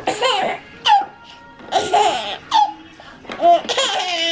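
Baby laughing in several short, high-pitched bursts as she is tickled on the belly.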